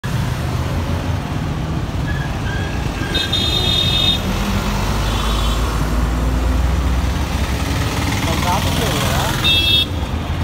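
Busy street traffic: a steady low engine rumble, with vehicle horns honking for about a second a few seconds in, more briefly a little later, and again just before the end.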